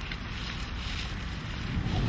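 Wind on the microphone: a steady rushing noise with a gusty low rumble.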